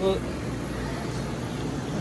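One short spoken word, then a steady low rumble and hum of background room noise with no distinct events.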